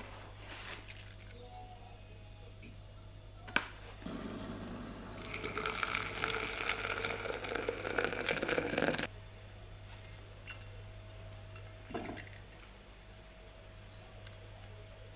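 Water poured into a glass French press onto ground coffee, a steady splashing fill lasting about five seconds that stops abruptly. A single sharp click comes just before the pour.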